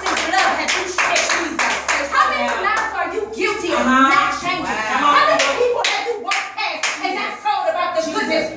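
Hand clapping, many quick irregular claps, mixed with excited, animated voices.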